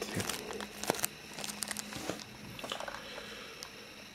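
Thin plastic zip-lock coin bag crinkling as the coin inside is handled: scattered small crackles and clicks, thickest in the first second and sparser after.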